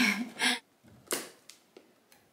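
A short laugh, then cardboard packaging being opened: a sudden scrape about a second in and a few light clicks as a large cardboard advent calendar box is pulled out of its sleeve.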